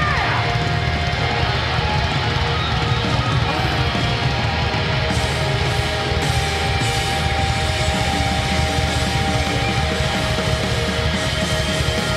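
Live hard-rock band music: electric guitars playing over a drum kit.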